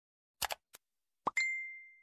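Subscribe-button animation sound effects: a couple of quick mouse clicks, then a short pop and a single bell-like ding that rings out and fades over about half a second.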